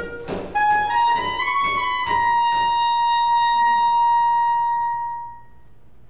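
A string ensemble of violins, violas and cellos plays the closing bars of a piece: a few moving notes rise to one long high held note, which fades out about five seconds in as the piece ends.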